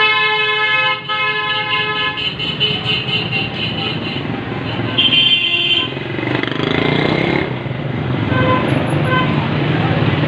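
Vehicle horns in busy street traffic: one horn held for about two seconds at the start, a shorter, higher-pitched horn blast about five seconds in, and two quick beeps near the end, over the steady noise of motorcycles and other traffic.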